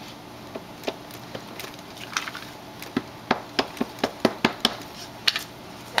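Black archival ink pad in its plastic case dabbed repeatedly onto a rubber stamp, making sharp taps. They come sparsely at first, then faster and louder from about three seconds in, a few taps a second.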